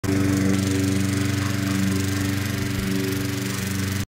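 A small engine running steadily at a constant speed, with a hum and a hiss; it cuts off suddenly at the end.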